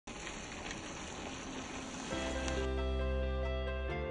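Chicken and vegetables sizzling in an enameled cast iron skillet, a steady crackle. About two seconds in, background music with sustained notes comes in and covers the sizzle.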